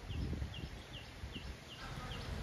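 A small animal chirping one short high note over and over, two to three times a second, over a low rumble.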